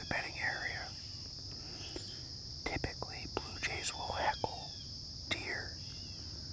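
Blue jays calling in harsh bursts: a group at the start, a longer run about three to four seconds in, and another short call near the end. A steady high insect drone runs underneath.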